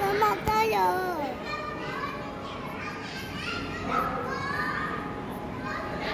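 Children's voices and chatter among visitors. Near the start a child's high voice slides up and down in pitch for about a second, and after that softer voices talk over one another.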